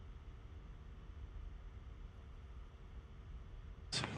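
Quiet background from a soccer match broadcast: a faint low rumble with a steady hum, and no commentary.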